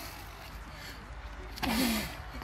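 A strongman's short, loud, strained grunting exhale about one and a half seconds in, as he heaves a 125 kg barbell up to his shoulders. A steady low rumble runs underneath.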